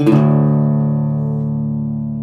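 Blues guitar chord struck once and left to ring, fading slowly: the song's closing chord.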